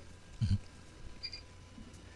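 A brief pause in a man's speech: quiet background hum with one short low sound about half a second in and a couple of faint ticks a little later.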